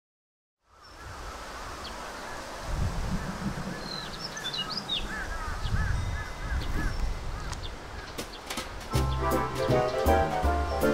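Outdoor garden ambience fading in after a moment of silence: birds calling, one repeating a short phrase several times, over a low rumble. Music starts near the end.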